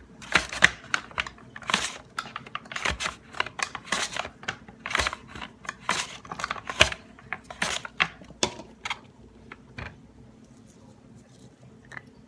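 Tupperware Mandolin slicer, dicing a potato on its larger blade setting: a quick, irregular run of plastic clicks and clacks as the hinged handle is worked and the potato is pushed through the blades. The clicking stops about two seconds before the end.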